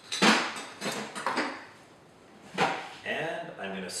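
Fresh ice cubes dropped into an empty rocks glass, clinking against the glass, with the loudest clink right at the start and a few more over the next two and a half seconds.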